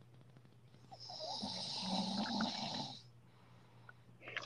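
A person snoring: one long snore of about two seconds, starting about a second in.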